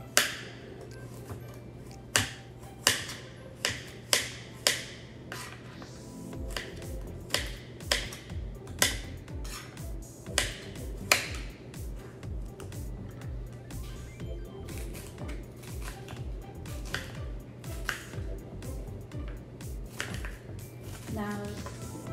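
Kitchen knife chopping a carrot on a plastic cutting board: a series of sharp, irregular chops. Background music plays, its steady beat coming in about six seconds in.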